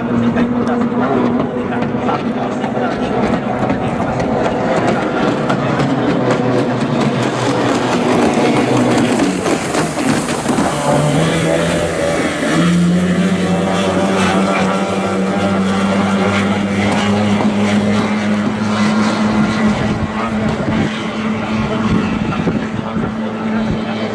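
Kyotei racing boats' two-stroke outboard engines running at speed with a steady high drone. About eleven seconds in, a second engine note rises in pitch and then holds as a boat runs close by.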